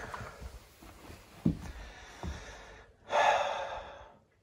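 A man's short, forceful breath out through the nose near the end, after a couple of soft bumps from handling.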